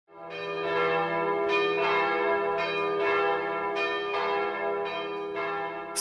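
Bells ringing, with fresh strikes in close pairs about once a second over long, sustained ringing tones; the sound fades in at the start and is cut off at the end.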